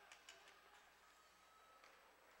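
Near silence: faint arena room tone, with a few faint ticks in the first half second.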